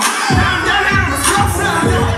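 Hip-hop backing track played loud through a club PA during a live gospel rap performance. The bass beat drops back in just after the start, with sung or shouted vocal lines over it and crowd voices.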